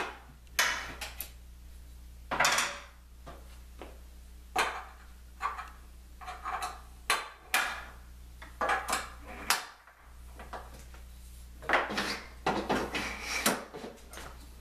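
Irregular metallic clinks, knocks and scrapes from hand tools and an aluminum extrusion rail being handled and adjusted on a work table. Among them is a T-handle hex key being worked and set down. The sounds come in clusters of short clatters with a brief lull partway through.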